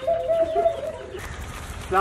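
A bird calling: one steady note held for about a second, then fading out.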